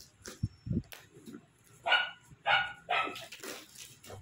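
A dog barking three or four short times in the second half, with a few soft knocks of cardboard being handled before the barks.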